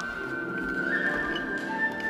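Flute, cello and harp trio playing classical chamber music: the flute holds a high note that steps up to a higher one about a second in, over sustained bowed cello and plucked harp.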